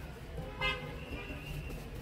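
Street traffic background with a low rumble and a short vehicle horn toot just over half a second in, followed by a thin high steady tone lasting under a second.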